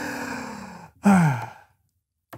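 A man's long, dreamy sigh: a breathy exhale falling in pitch, then about a second in a second, shorter voiced sigh that slides lower.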